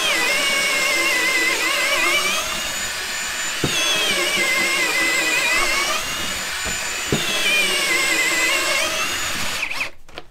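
Ryobi cordless drill in a Milescraft Drill Mate guide, boring a deep hole into an ambrosia maple shelf board. The motor whine sags in pitch as the bit bites under load, then climbs back up, about three times, and stops just before the end.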